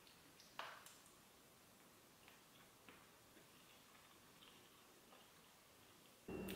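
Near silence: room tone, with one faint short sound just over half a second in and a few fainter ticks after it.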